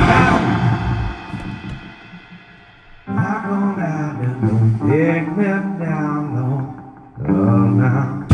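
Live rock band: a loud chord rings out and fades over about three seconds, then a quieter passage of guitar and bass lines starts suddenly, and the full band comes back in loudly near the end.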